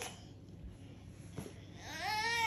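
Baby crying in a tantrum: one cry breaks off at the start, then a quiet pause for breath with one short sound, and the next cry rises just before the end.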